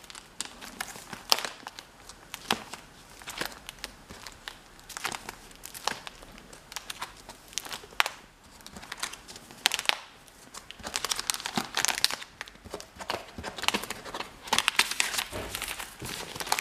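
Clear plastic sleeve pages of a postcard album crinkling and rustling as they are turned by hand, in irregular bursts of crackling that are busiest in the last few seconds.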